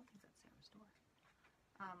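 Near silence in a pause in conversation, with faint low speech, then a clearly spoken 'um' right at the end.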